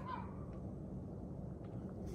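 Quiet, steady low background hum with no distinct event.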